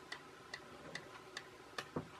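Faint, even ticking, a little over two ticks a second, with one louder knock near the end.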